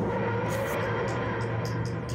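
TARDIS materialisation sound effect: a steady low droning hum.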